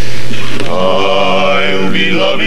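A barbershop quartet, four male voices, singing a cappella in close harmony. They hold a steady chord, then move to a new chord with vibrato about half a second in.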